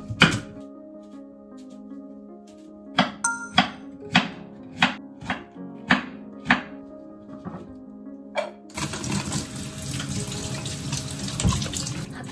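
Kitchen knife chopping daikon radish on a wooden cutting board, about eight separate cuts, then a tap running water into the sink from about nine seconds in.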